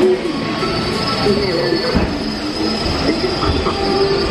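Spaceship Earth's Omnimover ride vehicle running along its track: a steady low rumble with a thin, steady high-pitched whine above it.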